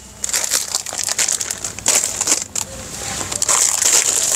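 Clear plastic shirt packets crinkling and rustling as packaged shirts are handled and laid out, a run of irregular crackles throughout.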